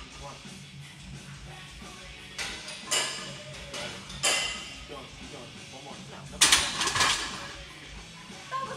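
Loaded steel barbell knocking against the bench-press rack's hooks in a few sharp clanks, the loudest cluster near the end as the bar is racked, over background music.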